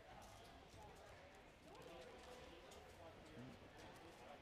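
Faint ice-rink ambience: distant voices chattering in the arena, with a low steady hum and occasional light clicks.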